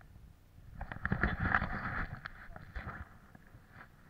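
Rustling and a rapid clatter of small knocks from a handheld camera being moved and handled, starting about a second in and dying away near the end.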